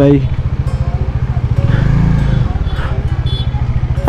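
Kawasaki Z900's inline-four engine with a loud exhaust, running at low revs in an even pulsing beat as the bike creeps along, swelling briefly about two seconds in.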